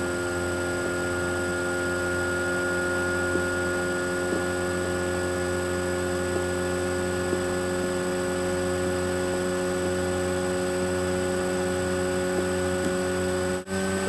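Steady electrical hum with several fixed tones over a faint hiss, with a few faint ticks and a brief drop-out near the end.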